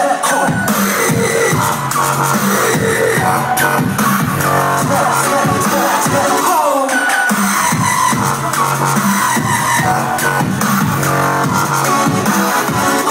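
Dubstep played live at high volume through a club sound system, heard from within the crowd, with sweeping synth glides over a heavy bass. The bass drops out for about a second just past the middle, then comes back in.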